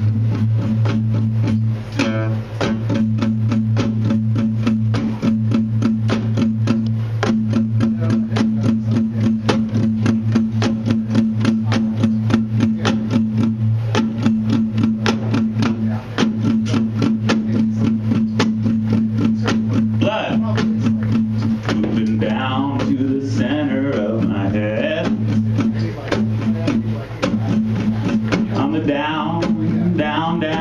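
Live lo-fi indie rock: a guitar strummed in quick, even strokes over a held low droning note, with drums. A voice comes in about two-thirds of the way through, singing over the guitar.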